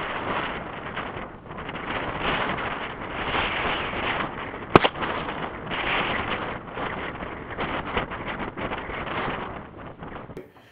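Gusty wind buffeting the microphone, with one sharp crack about five seconds in: a shotgun shot fired from about 70 yards at the hanging water-jug target.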